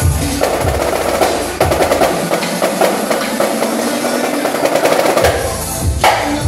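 Marching snare drums played live in fast rolls and rapid strokes over DJ dance music, whose deep bass drops in and out.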